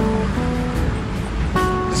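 Background music of sustained chords, changing to a new, higher chord about one and a half seconds in, over a steady low rumble.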